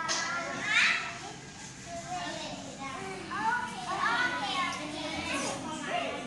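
Young children's high voices chattering and calling out while they play, with the loudest cry about a second in.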